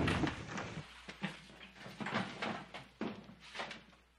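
A string of irregular light knocks and clatters in a room, fading in and out, with a man's grunt trailing off at the start.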